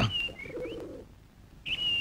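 Birds in the background: thin, high whistled chirps, one at the start and another near the end, with a short rising chirp and a faint lower sound in between.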